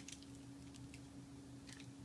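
Faint handling of a plastic wax-melt scent-shot cup: a few light clicks and ticks, and a brief rustle near the end, over a steady low electrical hum.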